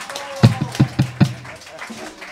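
A short drum fill on a drum kit: about five quick, punchy hits on the low drums within about a second, the low drum ringing on briefly after them.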